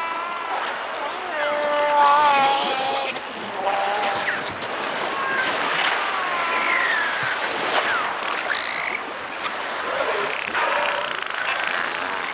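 Beluga whales calling: a chorus of whistles, chirps and squeals, some gliding up or down in pitch, mixed with buzzy pulsed calls and scattered clicks.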